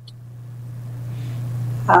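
A steady low hum that slowly grows louder.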